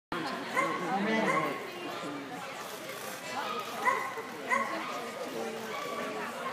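A dog barking in short sharp barks, several times, over the chatter of voices.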